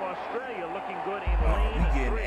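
A man speaking, with a heavy low rumble and thuds coming in just past halfway.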